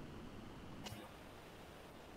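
Quiet room tone with faint background hiss and a single faint click about a second in.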